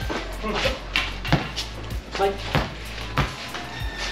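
Basketball thumping irregularly on a concrete court as it is bounced, caught and passed in a pickup game, with some players' shouts.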